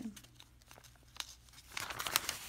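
Newspaper coupon insert pages rustling as a page is turned, with a few faint paper crinkles first and the rustle swelling near the end.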